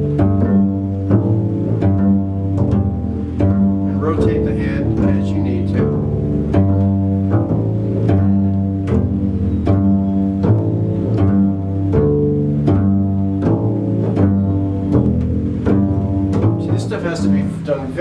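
Double bass played pizzicato: a steady, even run of plucked low notes in a string-crossing exercise, the right hand strictly alternating two fingers.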